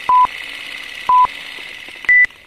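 Film-leader countdown sound effect: two short, identical beeps one second apart over a steady hiss.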